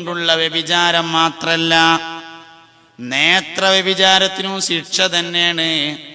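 A man chanting unaccompanied in long, held, ornamented notes. The first phrase tails away about two seconds in, and after a short gap a new phrase opens with a rising sweep and is held to its end.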